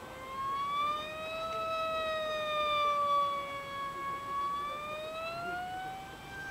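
HJK Speedwings F5D electric pylon-racer RC plane in flight, its 3300KV motor and 5×5 propeller giving a steady high-pitched whine. The pitch slowly rises, falls and rises again as the plane flies its course.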